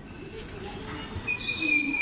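Passenger train coaches rolling slowly past, with high-pitched metallic squealing from the wheels and brakes that starts about a second in and grows louder.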